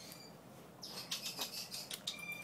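African grey parrot, restrained in a towel, giving a rapid run of short, harsh, raspy squawks, about six a second, starting about a second in.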